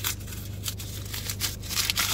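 A sheet of paper crinkling as a crumpled ball is pulled open by hand: a run of irregular sharp crackles that grows louder near the end.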